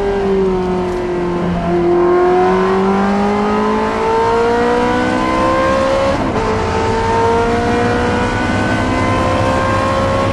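Ferrari 360 Challenge's 3.6-litre V8 engine heard from inside the cabin under race-track acceleration. The pitch eases briefly out of the corner, then rises steadily; about six seconds in it drops sharply as the car shifts up a gear, and it climbs again.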